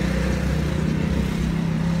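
Steady low drone of an idling motor-vehicle engine, an even hum with a low rumble underneath.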